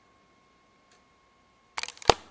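A wall clock ticking faintly about once a second over a steady high-pitched whine, then a quick run of loud clicks near the end as the camera is handled.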